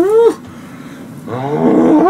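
A man groaning in pain at the burn of extremely hot curry: wordless moans that rise and fall in pitch. One ends just after the start, and a second, louder one builds from past halfway.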